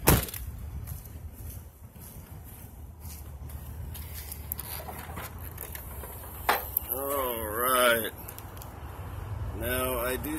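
A pickup truck door shutting with a sharp thump at the start, then a steady low outdoor rumble with a single sharp click a little past halfway, the kind made by a hood latch being released.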